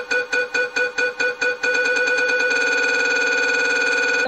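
Electronic beep tone in a sped-up funk track, stuttering rapidly at about seven pulses a second, then held as one unbroken tone from about a second and a half in.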